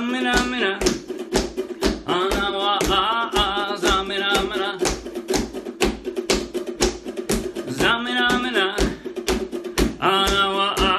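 Several ukuleles strummed together in a steady rhythm, with a man's voice leading group singing over them.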